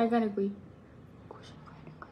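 A voice speaking briefly, then a quiet stretch with a faint whisper.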